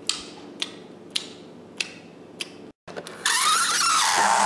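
Five sharp mechanical clicks, evenly spaced a little over half a second apart. After a brief break, a loud rushing noise with a rising whine starts near the end.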